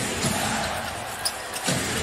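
A basketball dribbled on a hardwood court, a few bounces heard as low thumps, over the steady noise of a large arena crowd.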